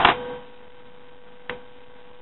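Folded, cut paper rustling briefly as it is handled at the start, then a single sharp click about one and a half seconds in, over a steady faint electrical hum.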